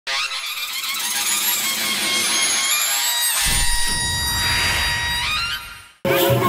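Synthesised intro sting: a rising sweep over several held tones, a deep low hit about three and a half seconds in, then a fade-out just before the end.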